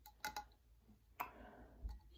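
A few faint, short clicks spread over two seconds in a near-quiet room.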